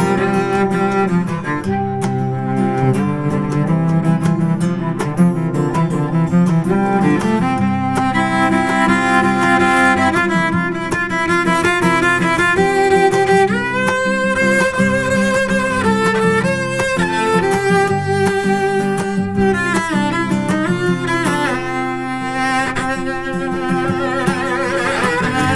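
Bowed cello playing an instrumental melody of held notes, some with a wavering vibrato, over a steady low bass line.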